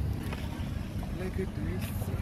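Low wind rumble on the microphone, with faint voices talking quietly in between.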